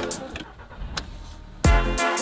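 A car door handle pulled and the door opened and shut, with a sharp click about a second in, during a short break in the background music. The music comes back loud with a bass beat near the end.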